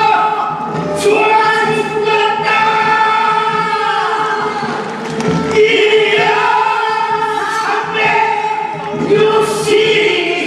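Voices of a changgeuk (Korean folk opera) cast singing together, long held notes in phrases that break off every few seconds.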